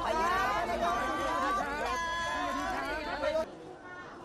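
A group of people chattering, several voices overlapping at once, cutting off suddenly near the end.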